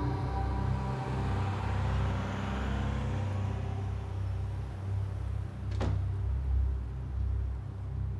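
A steady low rumble, with a ringing musical tone dying away over the first three or four seconds and a single sharp click about six seconds in.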